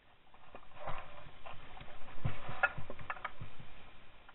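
Footsteps through dry rushes and rough grass: irregular rustling and crackling of the stems over soft thuds, with the loudest thud a little past halfway.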